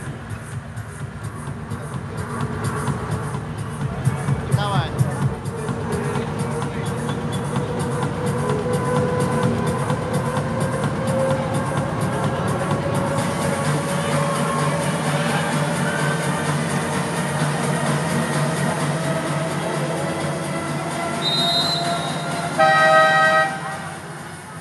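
Indoor volleyball arena during a timeout: crowd noise and music over the public-address system, with a long tone slowly rising in pitch through the middle. Near the end a loud buzzer-like tone sounds for about a second.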